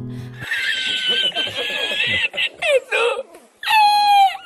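Backing music cuts off about half a second in. A man's high-pitched, squealing laughter follows from a meme clip: a long held stretch, then short bursts whose pitch falls near the end.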